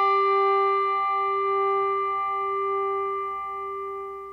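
Malmark G4 handbell ringing on after a single clapper strike on its medium setting, a slotted plastic striking surface: a soft tone with a brighter edge than felt, with a slight regular wobble, fading slowly.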